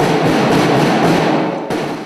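A drum line of snare drums playing a continuous roll that cuts off near the end.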